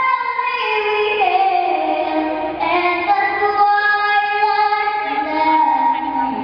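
A young girl singing the national anthem solo and unaccompanied, holding long notes that step down, rise again about two and a half seconds in, and drop near the end.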